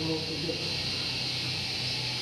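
Steady background hiss with a faint low hum, and a faint voice in the background near the start.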